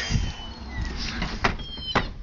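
Stifled, breathy laughter with faint squeaky notes, and two sharp clicks near the end.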